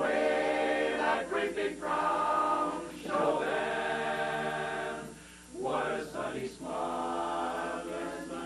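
Men's barbershop chorus singing a cappella in close harmony, in sustained chords with short breaks between phrases and a brief dip about five seconds in.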